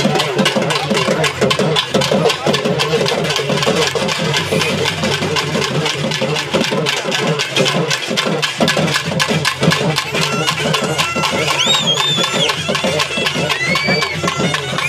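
Barrel drums beaten with sticks in a fast, steady rhythm. About two-thirds of the way through, a reed pipe joins with a high, wavering melody.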